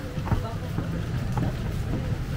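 A low, steady rumble with faint, indistinct voices over it.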